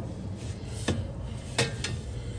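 Handling of a sheet-metal panel at an air-conditioning condenser, with light rubbing and three short clicks, two of them close together in the second half.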